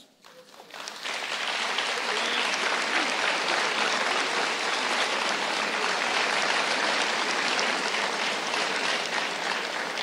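Audience applauding: a steady, dense clapping that starts about a second in and eases slightly near the end.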